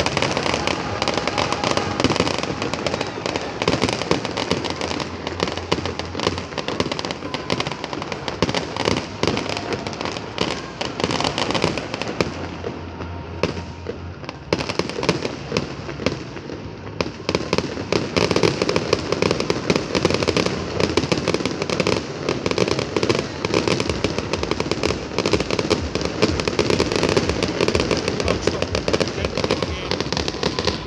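Aerial fireworks display going off in a dense, rapid string of bangs and crackles. It thins out briefly a little before halfway, then builds back up to a steady barrage.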